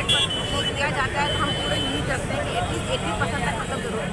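A woman talking into a microphone in Hindi, over steady outdoor background noise.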